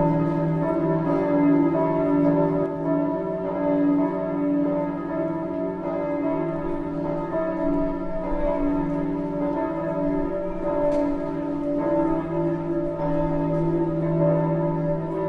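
Bells ringing: many overlapping bell tones that hang on and shift as new notes sound.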